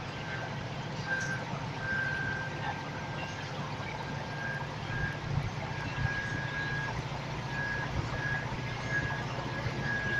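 Volvo B5TL double-decker bus running on the road, its four-cylinder diesel drone and road noise heard from the upper deck. A thin, high-pitched whine keeps coming and going over it, longest about two seconds in and just before the end.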